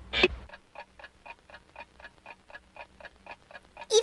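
A short, loud falling sound effect, then a cartoon character panting fast from the heat, about four quick breaths a second.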